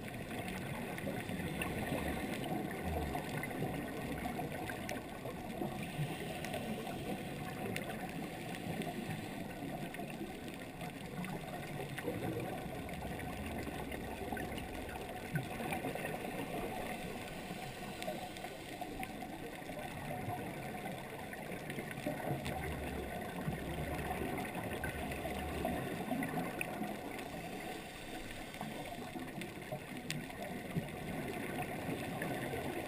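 Underwater ambience picked up through a waterproof action-camera housing: a steady, muffled rush of water, with low rumbles a few times.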